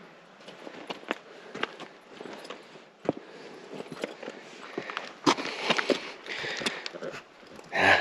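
Footsteps crunching and scuffing on bare rock and loose gravel, with scattered, irregular sharp clicks and knocks of shoes on stone.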